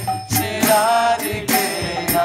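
A man singing a devotional chant with long, wavering held notes, over a steady jingling beat of small cymbals and a low sustained drone.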